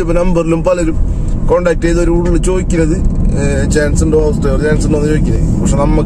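A man speaking over the steady low rumble of a car cabin while driving, with engine and road noise under his voice.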